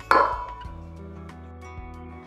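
A single sharp clink of hard kitchenware being knocked, with a short ringing tail, just after the start, over soft background music.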